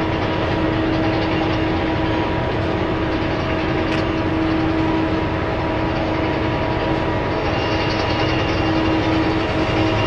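Large mining haul truck's diesel engine running hard and steady, with a constant whine over the drone, as its hydraulics raise the dump body to tip the load.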